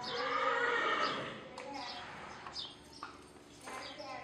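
A horse whinnying once, a long wavering call of about a second, with quieter voice-like calls and light hoofbeats after it.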